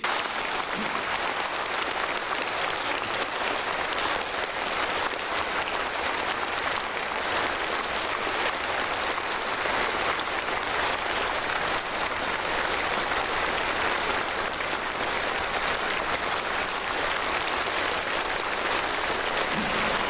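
A large seated audience applauding steadily and without a break in a big hall. It cuts in and cuts off abruptly.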